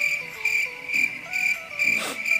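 A cricket chirping: a high, steady-pitched chirp repeated about two to three times a second.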